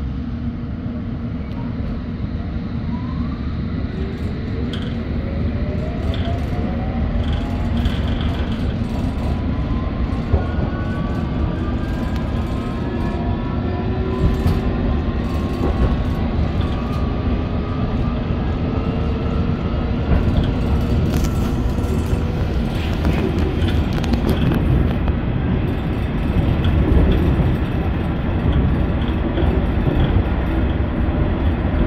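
London Underground S8 Stock train heard from inside the carriage as it pulls away and gathers speed: the traction motor whine rises in pitch over the first twenty seconds or so above a steady wheel-and-rail rumble, with clicks from the track near the end.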